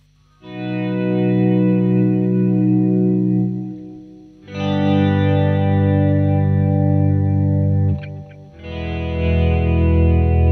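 Fender Jazzmaster electric guitar playing volume-pedal swells on the chords B, G and E through a delay: each chord fades in and rings out before the next swells up. A brief scratch of string noise comes just before the third chord.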